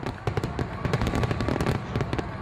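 Fireworks crackling and popping, a rapid, dense run of sharp pops.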